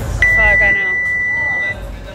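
Gym workout timer giving one long, steady high beep of about a second and a half, starting a moment in: the signal that the workout's time is up.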